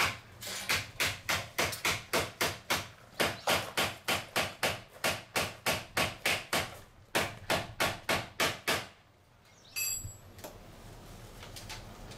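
Hammer tapping rapidly and evenly on the old entrance-door frame, about four blows a second, stopping after about nine seconds: knocking the frame back flat where it lifted when the cut transom rail was pulled out, so the new door frame can be fitted over it. A short metallic clink follows about ten seconds in.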